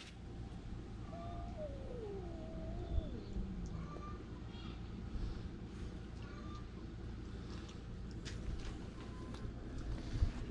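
A cat meowing: two drawn-out calls that slide down in pitch, about a second in and again between two and three and a half seconds, over a low steady background rumble.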